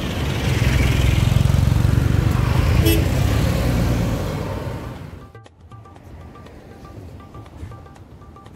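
A road vehicle passes close by, a loud low rumble with tyre noise that fades about four to five seconds in. The sound then cuts to quieter background music with a light repeating pattern.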